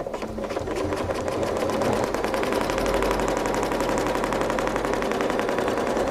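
Domestic sewing machine stitching at a steady, fast pace while free-motion quilting along a ruler, a rapid, even needle rhythm that starts at once and stops near the end.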